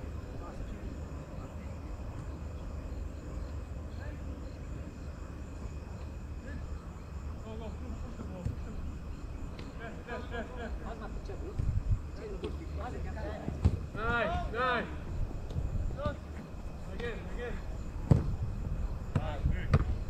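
Football match sounds: players' distant shouts, with a few sharp thuds of the ball being kicked about twelve, thirteen and eighteen seconds in, over a steady low rumble.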